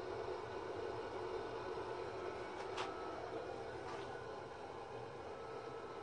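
Steady mechanical hum of an Ecotec A3 pellet burner running under test, with one faint click about three seconds in.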